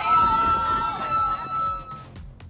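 Excited voices of a small group cheering, with one long high note held over them. The note and the voices stop near the end, where the level drops.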